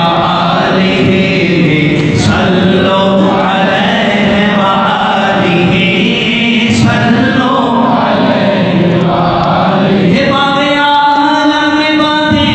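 A group of voices chanting a devotional recitation together in unison, with drawn-out sung phrases. Near the end the voices settle into long, steadily held notes.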